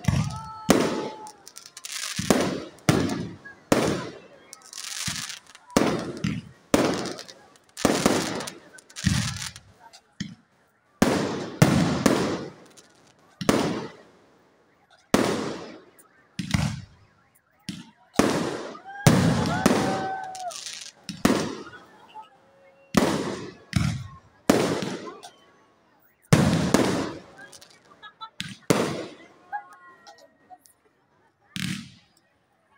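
Aerial firework shells bursting overhead one after another, a sharp bang every second or so with brief lulls. Each bang trails off in a fading echo.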